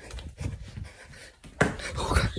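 Quick, heavy breathing mixed with cloth rubbing and knocking on a handheld phone's microphone as it is carried close against a shirt, getting louder near the end.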